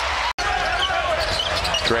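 Basketball arena crowd noise with short high sneaker squeaks on the hardwood court, broken by a sudden split-second dropout about a third of a second in.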